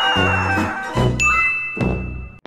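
Cartoon sound effects over background music: a whistle sliding down in pitch ends about a third of the way in, and just past halfway a bright ding starts and rings on at one steady pitch.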